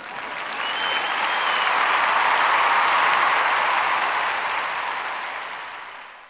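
Sitcom-style studio-audience applause that swells in, peaks in the middle and fades away over about six seconds, with a short whistle about a second in.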